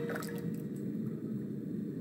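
Bathwater in a tub moving and dripping softly, with a few small water sounds just after the start, over a low steady background.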